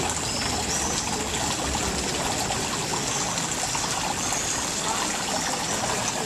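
Water running along a stone irrigation channel and trickling into the flooded basins around the courtyard's orange trees, a steady, even rushing.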